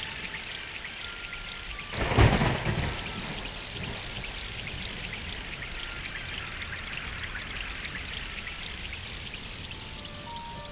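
Steady hiss of falling rain, with one loud clap of thunder about two seconds in that rumbles away over the next second.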